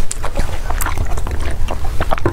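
Close-miked chewing: wet mouth sounds and many small sharp clicks over a steady low rumble.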